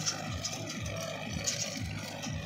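Tractor engine running steadily as it pulls a soil-loading trolley driven from its PTO shaft, with a low throb recurring a few times a second.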